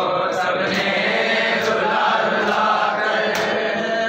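Men's voices chanting a noha, an Urdu mourning lament, together. Sharp hand slaps of matam (chest-beating) fall in a regular beat under the chant.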